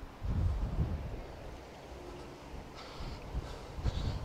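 Wind buffeting the camera microphone: an uneven low rumble, loudest in a gust during the first second, then weaker gusts.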